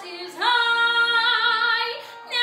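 A woman singing a musical-theatre song. About half a second in she holds one long note, which takes on vibrato toward its end.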